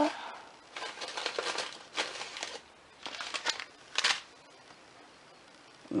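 Paper instant-oatmeal packets rustling and crinkling as they are handled on a countertop, a few short rustles in the first four seconds.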